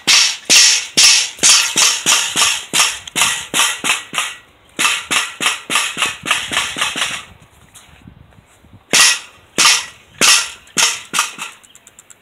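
Pogo stick bouncing on concrete: a fast run of sharp, clanking impacts, about three a second, in three runs with a longer pause past the middle.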